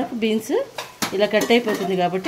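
A wooden spatula stirring diced potatoes and green beans in an aluminium pot, scraping and clicking against the pot, with a voice talking over it.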